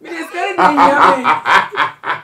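Group of people laughing together: after a brief voice, loud hearty laughter breaks out about half a second in, in rapid pulses of roughly four a second.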